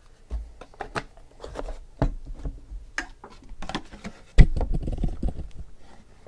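Trading cards and their packaging being handled on a table: a run of small clicks and rustles, then a sharp thump about four and a half seconds in, with a low rumble after it.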